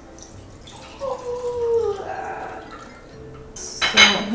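Hot bacon drippings poured from a stainless steel skillet into a cup, the liquid trickling. Near the end the pan is set down on the gas stove grate with a clank.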